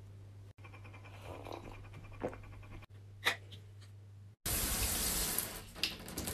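A stainless-steel electric kettle switched on: a low steady electric hum with a couple of light clicks. About four and a half seconds in, a loud steady rush of running water takes over.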